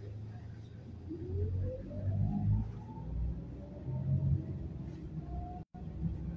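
City bus drivetrain running with a low hum and rumble, and a whine that rises in pitch as the bus picks up speed, then holds steady. The sound drops out for an instant near the end.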